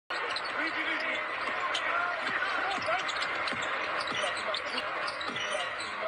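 A basketball dribbled on a hardwood court, with repeated irregular bounces, over steady arena noise and faint voices.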